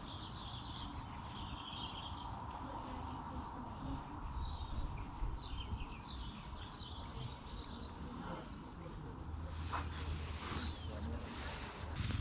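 Birds chirping in short repeated calls, over a steady low outdoor rumble.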